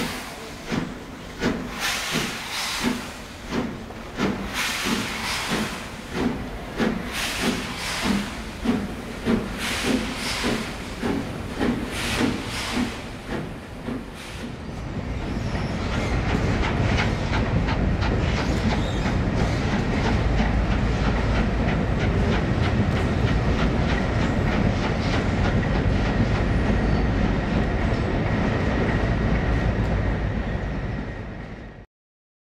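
LMS Princess Coronation class Pacific 6233 'Duchess of Sutherland' pulling away slowly, its exhaust beating about one and a half to two times a second, with steam hissing at the cylinders. About halfway through, the beats give way to a steady low rumble with no beat.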